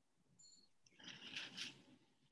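Near silence, with a faint, brief, high-pitched scratchy sound about a second in.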